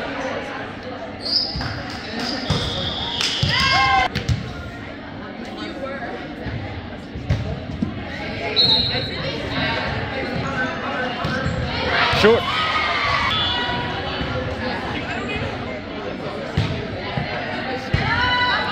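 A volleyball being served, hit and bumped in a gym, each contact a sharp smack echoing off the hall. Sneakers squeak on the hardwood floor now and then, over a steady murmur of spectators and players talking.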